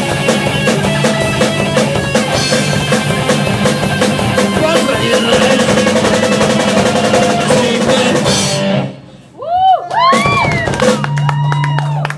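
A live rock band with drum kit and electric guitars plays loudly and ends the song sharply about nine seconds in. After the stop come a few short rising-and-falling squealing swoops and a held low note.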